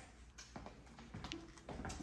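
Near quiet: faint room tone with a few soft, faint clicks.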